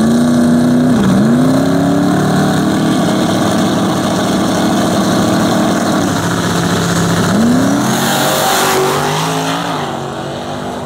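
Two drag cars' engines running on the starting line, held at a steady pitch with a couple of brief dips and recoveries in revs. Near the end the cars launch, with a loud noisy surge as the revs climb.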